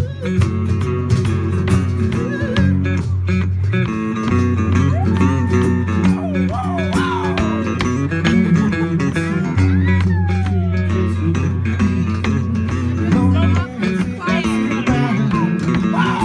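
Live band music led by a strummed acoustic guitar over long held bass notes, with a lead line of sliding, bending notes in the middle.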